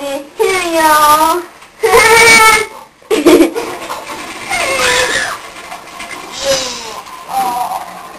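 A person's voice making drawn-out, wordless vocal sounds, several calls that rise and fall in pitch, with short gaps between them.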